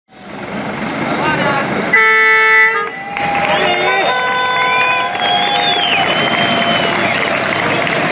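Truck air horn giving a loud blast about two seconds in, followed by further, longer horn tones, over the noise of a crowd of voices.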